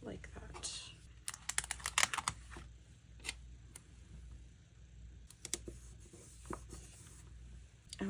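Paper stickers being handled and pressed onto a planner page: clusters of short crackles and taps, busiest a second or two in, with a few more scattered later.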